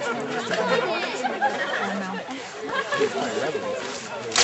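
Several people talking over one another at once: indistinct group chatter with no single clear voice.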